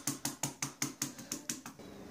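A fork pricking puff pastry in a tart dish, docking it so it won't puff up in the oven: a quick, even run of sharp taps, about six a second, as the tines go through the dough and strike the dish. The tapping stops near the end.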